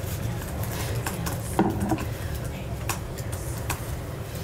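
Indistinct background voices of people talking off-microphone in a small room, over a steady low hum, with a few small clicks and knocks scattered through.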